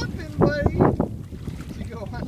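A person laughing in a short run of pulses about half a second in, over steady wind rumble on the microphone.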